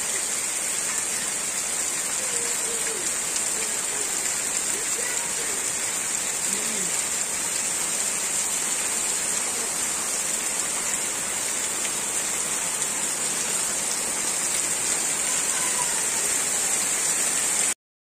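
Heavy rain falling steadily on wet ground, a constant even hiss of rain.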